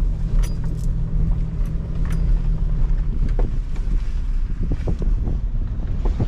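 Pickup truck cab interior while driving slowly over a rough dirt track: low engine and road rumble, with knocks and rattles from the cab and load over the bumps. A steady engine hum runs for about the first half, then gives way to rumble and scattered knocks.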